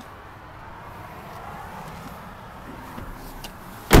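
Low steady outdoor background noise with faint handling clicks, then one sharp, loud knock just before the end.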